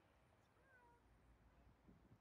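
Near silence: faint outdoor background with a couple of faint, short gliding calls a little after the start.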